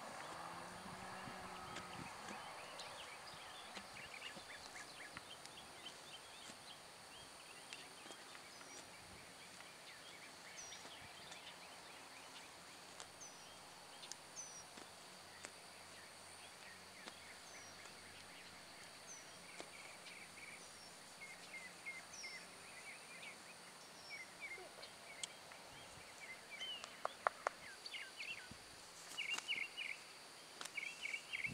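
Faint outdoor ambience: a steady high hiss with scattered short bird chirps, and a flurry of quick clicks and chirps near the end.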